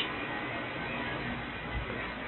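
Steady airflow noise from a gas furnace's blower running in cooling mode, with a soft low thump near the end.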